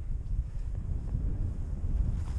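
Wind noise on a skier's point-of-view camera microphone while gliding through deep powder: an uneven low rumble with no distinct turns or impacts.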